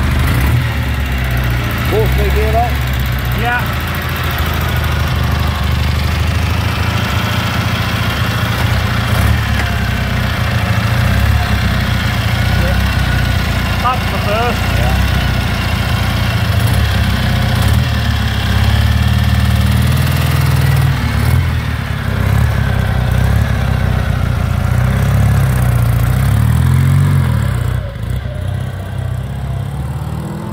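1951 Douglas 90 Plus replica's 350cc flat-twin engine running, mostly at idle with the revs rising and falling now and then. About two seconds before the end it gets quieter as the bike pulls away.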